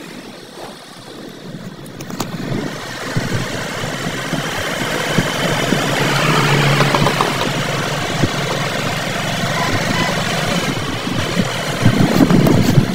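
Motorcycle riding along a road, its engine running under a steady rush of wind on the microphone, growing louder through the first half.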